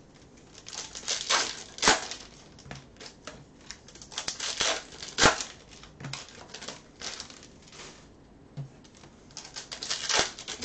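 Hands tearing open and crinkling foil baseball card pack wrappers and handling the cards, in irregular rustles and clicks. The sharpest sounds come at about two seconds and about five seconds in.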